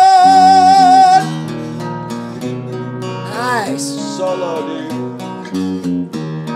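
Live unplugged performance on acoustic and electric guitar with singing. A singer holds one long note with vibrato, which stops about a second in. The guitars then play on more quietly, with a short sliding vocal phrase in the middle.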